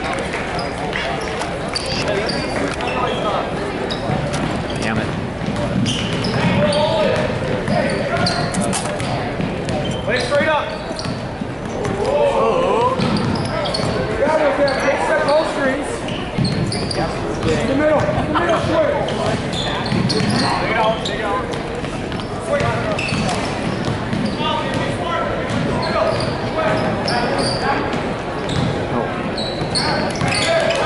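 Basketball game in play in a large gym: the ball bouncing on the hardwood court in short sharp knocks, under a steady mix of crowd and player voices and shouts.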